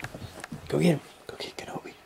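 A person whispering and murmuring softly in short broken bursts, with one louder voiced sound a little under a second in.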